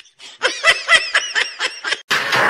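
High-pitched human laughter: a rapid run of short laughing bursts that starts a moment in and breaks off abruptly at the end.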